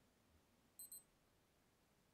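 Casio G-Shock GA-2300's built-in buzzer giving two short, high, faint beeps in quick succession about a second in, as the mode and light buttons are held down to shift the analog hands out of the way of the LCD panels.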